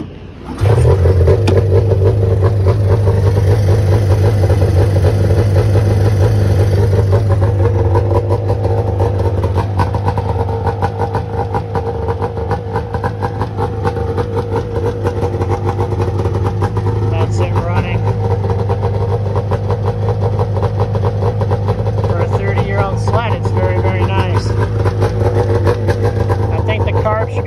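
Arctic Cat ZR580 snowmobile's two-stroke twin engine starting up about half a second in, then idling steadily.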